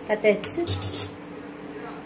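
Metal clinks of a stainless steel kadai being handled on a gas stove, a quick cluster of clinks about a second in, followed by a faint steady hum.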